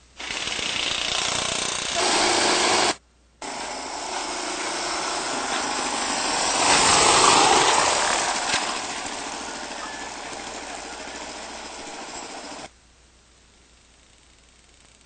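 Dirt bike engine running as the bike is ridden, growing louder to a peak about seven seconds in and then fading. The sound cuts off abruptly at about three seconds and again near the end.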